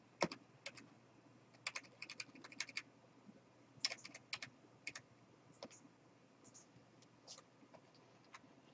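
Faint clicking at a computer while paging forward through an e-book: irregular clicks, with quick runs of several about two and four seconds in, then a few spaced single clicks.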